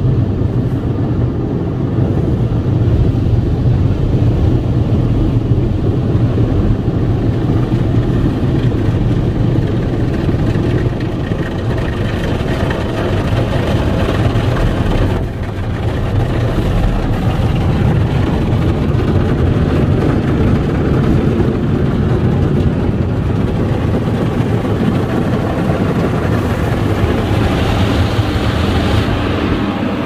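Automatic car wash heard from inside the car's cabin: a steady, deep rumble of machinery and water striking the car's body and windows, turning brighter and hissier near the end.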